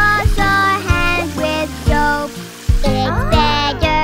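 Children's song music with pitched instrument notes over a regular beat.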